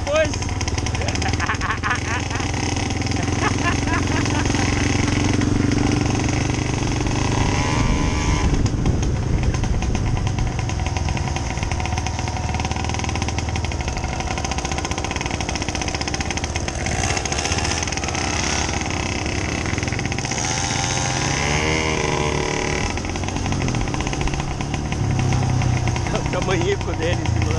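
Small motorcycle engines running while being ridden slowly on a dirt track, a steady low engine note throughout.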